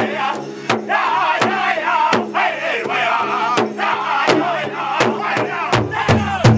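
Powwow drum group singing an intertribal song: several men's voices in high, wavering unison over a large powwow drum struck together in a steady beat, a little under one and a half beats a second.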